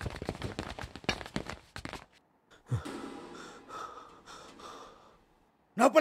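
A person's breathing and gasps: a quick run of short, sharp breaths for about two seconds, then softer, drawn-out breathing. A voice breaks in loudly at the very end.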